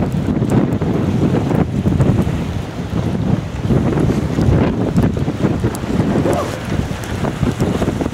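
Strong storm wind buffeting the camera microphone: a loud, gusty rumble that swells and dips.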